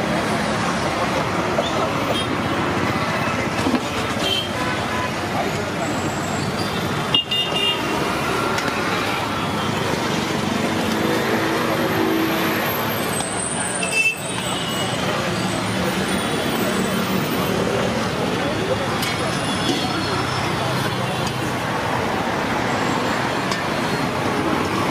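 Roadside traffic running steadily, with vehicle horns tooting and people talking in the background.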